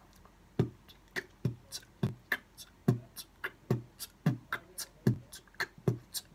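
Beatboxing: a mouth-made beat of low kick-drum thumps alternating with sharp 'k' snare clicks, a steady rhythm of about three hits a second that starts about half a second in.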